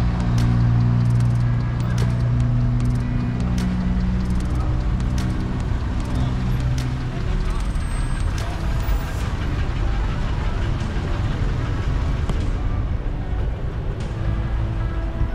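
Road traffic: a nearby vehicle engine holds a steady low hum for about the first seven seconds, then fades, leaving general traffic noise with scattered short knocks.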